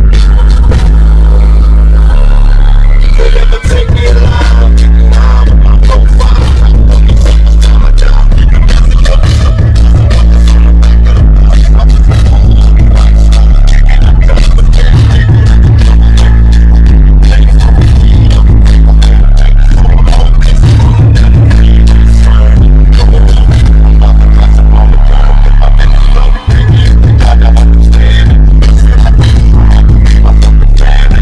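Hip-hop track with a heavily boosted bass line and a steady drum beat, with a rapped verse over it. The bass briefly drops out twice, about three and a half seconds in and near the end.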